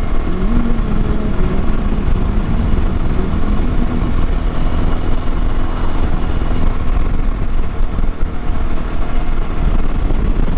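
TVS Apache motorcycle engine running steadily while cruising on an open road, with heavy wind rushing over the bike-mounted microphone.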